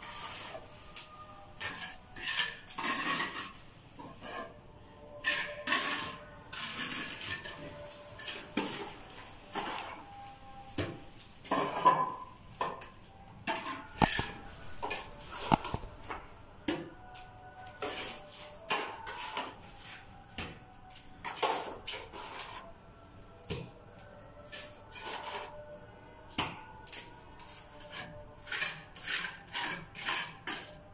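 Steel plastering trowel scraping and clinking as cement mortar is scooped and pressed into a chase cut in the wall, then smoothed flat, in irregular short strokes and taps.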